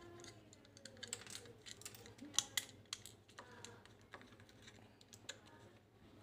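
Faint, irregular clicks and taps of a small plastic speaker casing and its circuit board being handled, over a faint steady low hum.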